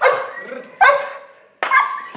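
A German shepherd patrol dog barking in three loud barks, about one every 0.8 seconds, while lunging against its leash.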